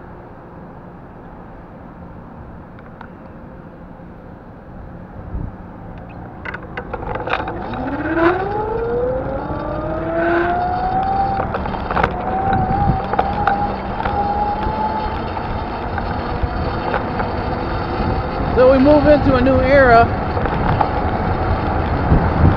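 A low steady hum while stopped, then a motor whine that rises smoothly in pitch over about four seconds as the vehicle pulls away from a standstill. It settles into a steady whine over growing road and wind noise, and a short wavering tone comes near the end.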